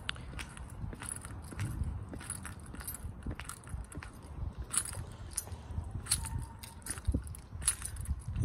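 Footsteps on brick block paving: irregular short clicks and scuffs over a low rumble.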